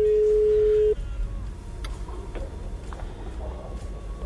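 Telephone ringback tone heard over the line while a call waits to be answered: one steady beep lasting about a second, then faint line hiss with a few soft clicks.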